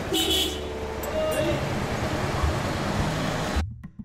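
Busy street sound of traffic and voices, with a short toot near the start. It cuts off suddenly shortly before the end.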